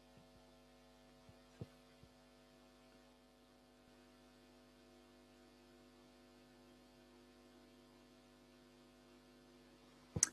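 Near silence: a faint, steady hum of several constant tones, with a faint click about one and a half seconds in.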